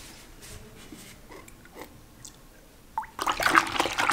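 Water being swished and stirred by hand in a plastic bucket, mixing in shampoo for the wash. It starts about three seconds in, after a few faint small sounds.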